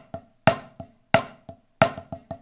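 Drumsticks playing paradiddle rudiments on a rubber practice pad set on a marching snare drum, at 90 BPM: a sharp accented stroke about every two-thirds of a second with softer taps between.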